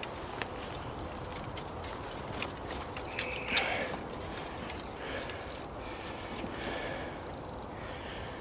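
Footsteps through wet boggy ground, with tussock grass rustling and brushing past, and a few sharp clicks and snaps along the way.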